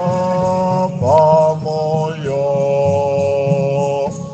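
A slow, chant-like hymn: a voice sings long held notes over a steady low accompaniment.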